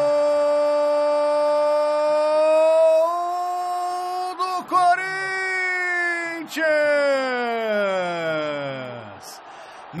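A Brazilian football commentator's long drawn-out goal cry, 'gooool', held on one note for about nine seconds. It rises slightly about three seconds in, then slides down in pitch and fades out near the end.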